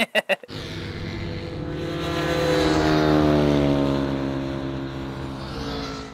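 Custom BMW R nineT race bike's boxer twin, with a freer-flowing exhaust, running hard past on track. It grows louder to a peak about halfway through while its pitch slowly sinks, then fades.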